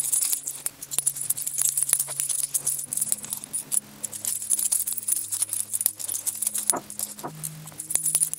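A stack of large old cupronickel 50p coins clinking as they are flicked through one by one in the hand: a rapid, irregular chinking of coin edges against each other. Faint background music with sustained notes plays underneath.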